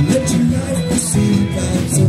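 A live rock band playing: electric guitar and electric bass, with sung vocals.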